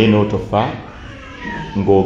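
A man's voice speaking in drawn-out syllables, loudest near the start and again near the end.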